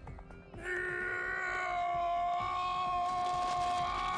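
An anime character's long, drawn-out scream of pain. It starts about a second in and is held on one steady pitch, over the episode's background music.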